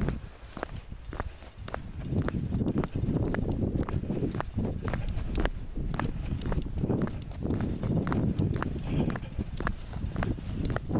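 Footsteps on an asphalt road, sharp irregular steps over a low rumble of wind or handling on the microphone, quieter for the first second or two.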